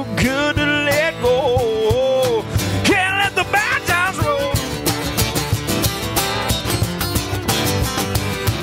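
Live acoustic country band: two acoustic guitars strumming with a cajón keeping the beat, and a wordless vocal line over the first half. From about halfway the voice drops out and the strummed guitars carry an instrumental break.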